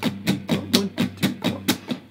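Electric guitar, a Fender Stratocaster-style, played as a run of muted strums: even, percussive scratches at about six a second with the strings damped so that almost no notes ring.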